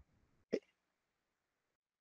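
Near silence broken by one short, hiccup-like vocal sound from a man about half a second in.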